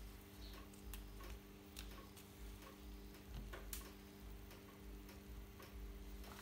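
Quiet, low steady hum with scattered light clicks and taps as cut rose stems are handled and set into a glass vase.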